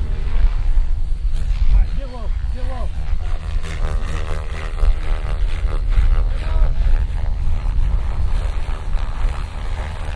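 Radio-controlled helicopters flying aerobatics, their rotor and engine pitch swooping up and down repeatedly, over a heavy low rumble.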